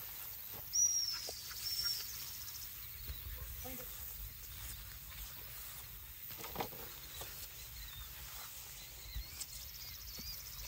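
A bird calling twice with short, high whistled notes near the start, with fainter chirps near the end, over the soft swish of footsteps through tall grass.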